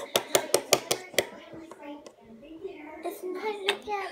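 Plastic toy blocks and an action figure knocking against a wooden tabletop in a quick run of clacks, followed by a child's wordless vocal play noises.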